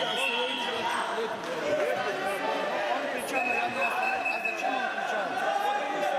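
Indistinct chatter of many voices echoing in a large sports hall, with no single clear speaker; a thin steady high tone sounds faintly over the second half.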